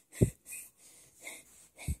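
Breathy puffs and soft bumps right at a phone's microphone as plush toys are handled and moved in front of it, a short puff about every half second. The two loudest, each with a dull thud, come just after the start and near the end.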